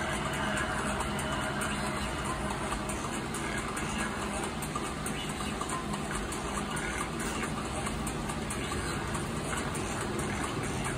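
Wall-mounted electric fan running: a steady rushing noise with a low hum, unchanging throughout.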